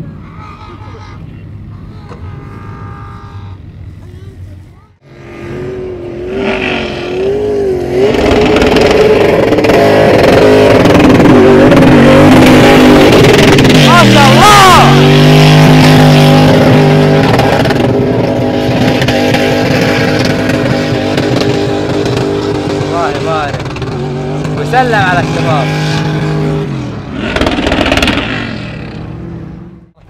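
An off-road 4x4's engine held at high revs as it climbs a steep sand dune under full load, loud and steady for about twenty seconds. Its pitch dips and climbs back up about halfway through and again later, and it stops a few seconds before the end. A quieter engine and voices are heard in the first few seconds.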